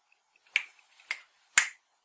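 A man snapping his fingers three times, about half a second apart.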